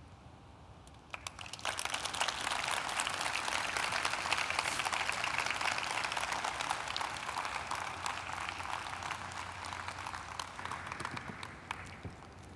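Audience applauding: a few scattered claps about a second in, swelling quickly into full, steady applause that tapers off near the end.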